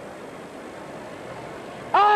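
Steady crowd murmur, then right at the end a man's loud shouted command begins with a falling pitch: the capataz calling the bearers to lift the paso.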